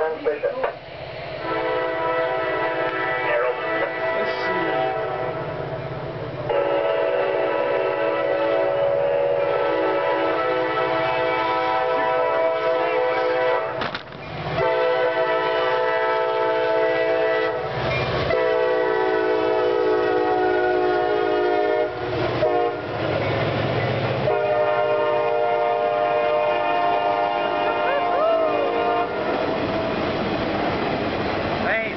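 A CSX diesel locomotive's air horn sounds a chord in a long series of sustained blasts, broken by a few short gaps, as the train approaches and passes. Train rumble runs underneath.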